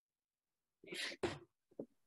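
A person's stifled sneeze: two short, quiet, breathy bursts about a second in, then a brief faint sound.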